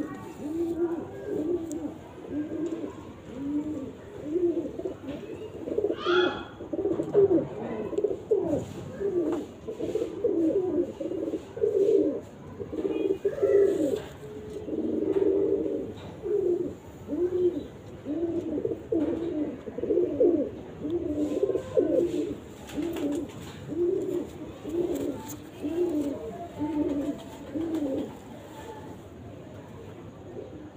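Domestic pigeons cooing over and over, about one low coo a second, with several birds overlapping in the middle of the stretch.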